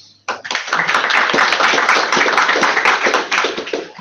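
Audience applauding: a dense patter of many hands clapping that starts abruptly just after the start and tails off near the end.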